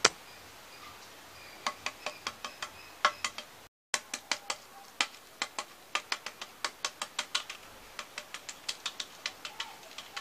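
Hard-boiled eggshells being cracked and peeled by hand: a quick, uneven run of small sharp cracking clicks, about four or five a second, broken by a brief silent gap a little before four seconds in.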